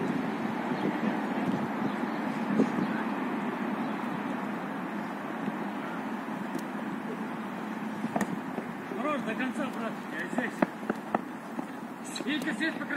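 Outdoor football kickabout: a few sharp thuds of the ball being kicked over a steady rushing background noise, with players' voices calling out in the last few seconds.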